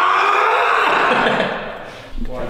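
A man's loud, aggressive yell, held for about a second and a half and fading near the end.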